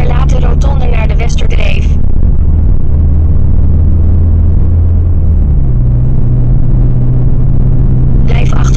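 Car engine and road noise heard from inside the moving car: a steady low drone whose pitch steps up about two-thirds of the way through.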